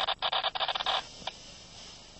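Paraglider wing fabric rustling and fluttering as the canopy is pulled up off the grass, with a rapid flutter for about the first second that then stops, leaving a quieter stretch.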